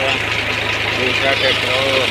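A tractor's diesel engine running steadily with a low, even beat, while water gushes from a tubewell pipe into a concrete tank.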